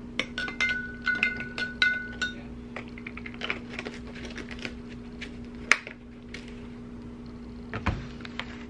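A plastic measuring spoon clinking against a glass measuring cup: a quick run of taps with a ringing glass tone in the first couple of seconds, then scattered light clicks and knocks.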